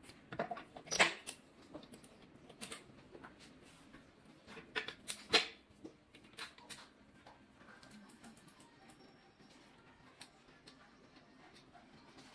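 Scattered light clicks and taps of small parts being handled during assembly of an electric unicycle, irregular and quiet, with the loudest clicks about a second in and around five seconds in.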